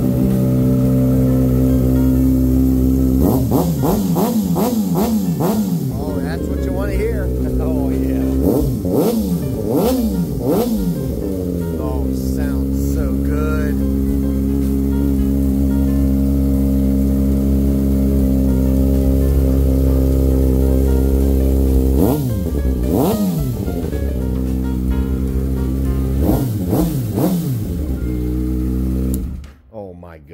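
Kawasaki Ninja ZX-6R 636 inline-four with a Two Brothers carbon shorty exhaust idling steadily, a deep growl. Its throttle is blipped in several groups of quick revs, and the engine cuts off just before the end.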